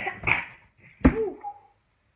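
A boy's loud, raspy shouts at the camera, about three short bursts, the last one about a second in rising and falling in pitch.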